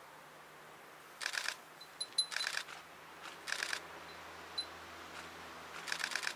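Camera shutters firing in four short bursts of rapid clicks in continuous-shooting mode, with a few single ticks between them. A faint, steady low hum runs underneath.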